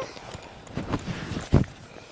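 A fanny pack being handled: a few soft knocks and rustles as the bag and its strap are moved about.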